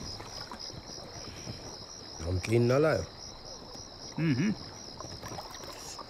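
Crickets chirping in a steady, evenly pulsing trill, several pulses a second. A man's voice gives two short wordless sounds, the louder one about two and a half seconds in and a shorter one about four seconds in.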